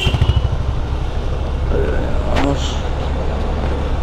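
Motor scooter riding slowly, its small engine running steadily under a low rumble of wind and road noise on the microphone.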